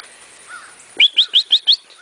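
A small bird calling: a quick series of about five short, high rising chirps about a second in, with a fainter single chirp just before.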